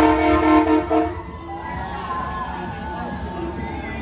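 A loud air horn blast sounding several tones at once, held for about a second and then cut off sharply.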